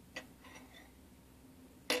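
Faint handling sounds of yarn tails being tied into a knot, with one light click just after the start, over a quiet room with a faint steady hum.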